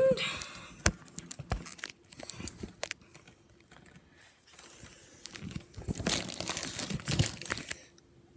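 Crinkling and rustling close to the microphone, as something is handled by the phone: scattered sharp crackles at first, a quieter spell, then a denser rustle over the last two or three seconds.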